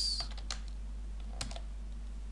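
Computer keyboard being typed on, a few separate key clicks, over a steady low hum.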